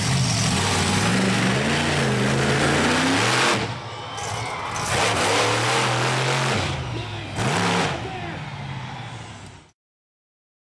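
Monster truck engine revving hard and easing off, its pitch rising and falling, with a short rev about seven and a half seconds in. The sound fades out just before the end.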